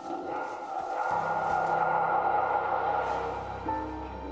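Tense background score: an airy swell rises and holds, a low drone comes in about a second in, and a few pitched notes enter near the end.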